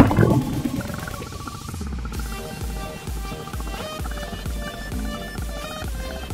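A splash of water as the camera plunges underwater, followed by background electronic music with a steady beat.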